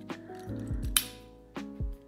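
Background music with a steady bass pulse, and one sharp metallic snap about halfway through: needle-nose pliers breaking off the brass connecting tab between the terminals of a duplex outlet so its halves can be wired separately.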